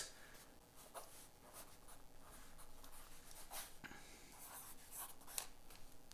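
Faint, intermittent scratching of a graphite pencil on sketchbook paper, a few short strokes spread out.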